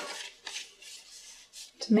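White cardstock being handled and folded flat, giving a few soft papery rustles and slides. Speech starts near the end.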